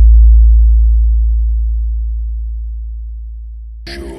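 Deep sub-bass sine tone of a DJ 'vibration' bass mix, held on one low pitch and slowly fading, with the full beat cutting back in near the end.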